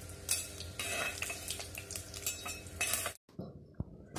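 A spatula stirring and scraping in an earthenware pot while dried red chillies and curry leaves sizzle in hot oil, with a run of short scrapes and clinks. The sound cuts off abruptly about three seconds in.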